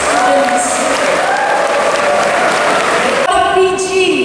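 Audience clapping, with a woman's amplified voice carrying on over it. The clapping stops about three seconds in and the voice continues alone.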